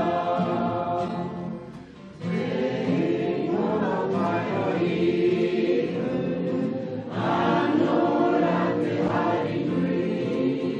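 A choir singing a sacred song in harmony, with a short breath between phrases about two seconds in and a fuller, louder passage from about seven seconds in.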